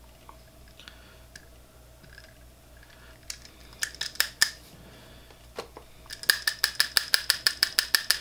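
Brass hair stacker holding a bunch of elk hair, tapped quickly and evenly on the tying bench, about six or seven taps a second, starting about six seconds in, to even the hair tips. A few single clicks and knocks come earlier.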